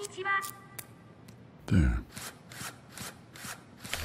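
Sound effects for a miniature ASIMO robot figure. There are short electronic chirps at the start, then a loud falling sweep a little under two seconds in, then a run of light, even clicks, about four a second, like small mechanical footsteps.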